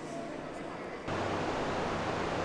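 Steady outdoor rushing noise, like wind or surf, that jumps abruptly louder about a second in.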